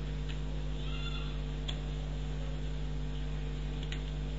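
Steady electrical mains hum with a few scattered computer keyboard key clicks as an address is typed, and a brief high squeak about a second in.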